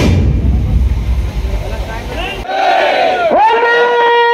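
Loud noisy drumming and crowd sound that cuts off about two and a half seconds in. A voice follows, shouting a call that slides up and down and then holds one long steady note near the end.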